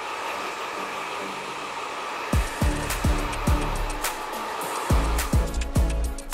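GHD hair dryer running with a steady whir. About two seconds in, background music with a heavy kick-drum beat comes in over it.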